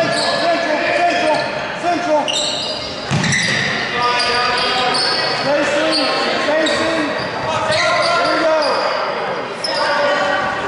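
Basketball game in a gymnasium: a basketball dribbled on the hardwood court, sneakers squeaking, and indistinct shouting from players, coaches and spectators.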